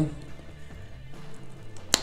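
Faint steady background music in a pause of speech, with one sharp mouth click near the end as the lips part to speak again.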